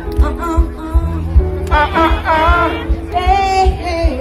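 Live band music: a woman singing over bass and drums, the drum beats pulsing steadily underneath.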